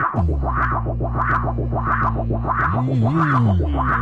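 Live-looped beatbox techno beat through effects: a sharp hi-hat-like hit about every two-thirds of a second over a fast low pulse, with a deep bass note that drops in at the start, holds, then bends up and down near the end.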